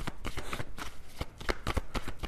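A deck of tarot cards being shuffled by hand: a quick, irregular run of soft clicks and flicks.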